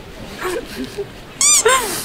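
Soft laughter, then about one and a half seconds in a loud, short, high-pitched squeak followed by a second squeak that falls in pitch.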